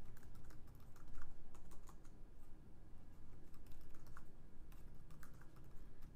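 Typing on a computer keyboard: an irregular run of fairly quiet key clicks.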